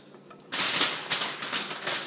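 Chunks of cut raw potato tumbling out of a bowl onto aluminium foil: a rapid run of taps and clatter that starts about half a second in.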